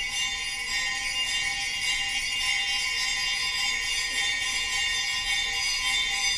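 Music: a steady, bright shimmer of jingling small bells, with two held tones sounding underneath.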